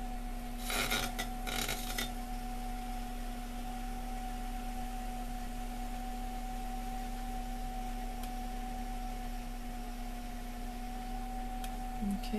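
Electric potter's wheel running with a steady humming whine. Near the start, two short scraping rubs of hands working the wet clay mug on the wheel.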